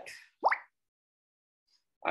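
A single short electronic 'bloop' that sweeps quickly upward in pitch about half a second in, like a computer notification sound.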